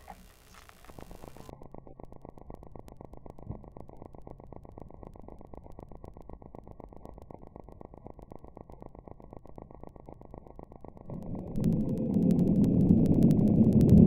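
Steady low background rumble, then about eleven seconds in a model rocket's F20-4 motor fires and burns with a loud rushing rumble that grows and is loudest near the end.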